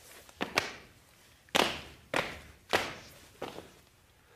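A run of about six sharp thumps and slaps, spaced irregularly half a second or so apart, each with a short fading tail.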